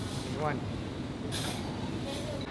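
Steady restaurant room noise, a low, even din, under a single short spoken word. A brief hiss comes about a second and a half in.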